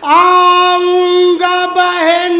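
A man's voice singing a noha, an Urdu mourning lament, unaccompanied. A long note glides up at the start and is held steady for over a second, then comes a brief break and a second held note.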